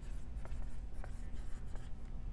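Dry-erase marker writing on a whiteboard: faint scratching of the felt tip with a few short squeaks as letters are drawn, over a low steady room hum.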